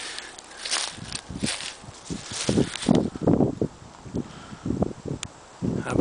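Footsteps through dry leaf litter and undergrowth, with leaves and twigs brushing past, in an irregular run of crunches.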